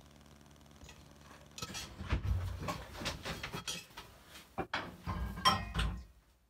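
Cast-iron Dutch oven and kitchen utensils being handled, clinking and knocking. Quiet for the first second and a half, then a string of light knocks and clinks, with louder clanks near the end.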